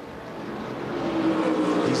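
Pack of Whelen Modified race cars' V8 engines running at speed on track, getting steadily louder, with a steady engine note building about a second in.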